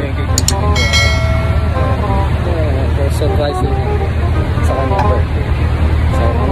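Steady low rumble of road traffic, with a voice talking over it. A brief held pitched tone sounds about a second in.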